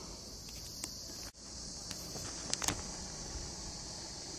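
A steady, high-pitched chorus of insects, with a few light sharp taps about two and a half seconds in.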